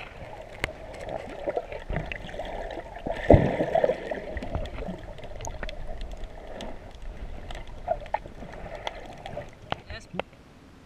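Muffled underwater sound from a submerged camera: water moving, with scattered sharp clicks and knocks and one loud thump about three seconds in.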